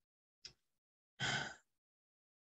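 A brief faint mouth click, then a short breath about a second in from the speaker pausing mid-answer; otherwise near silence.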